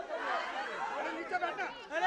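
A crowd of people talking over one another: indistinct, overlapping chatter in a hall.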